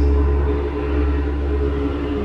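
Ambient background music: a deep, steady drone with a few sustained tones held above it.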